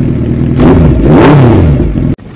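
Suzuki Hayabusa superbike engine revved hard through its exhaust, the pitch climbing and falling with each blip of the throttle; very loud.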